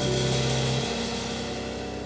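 Live Latin jazz combo of piano, electric bass and drum kit holding a sustained chord under cymbal shimmer that fades steadily. The low bass note drops out a little under a second in.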